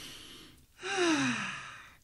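A man's sigh: a short breathy intake, then a long voiced exhale whose pitch falls steadily as it fades.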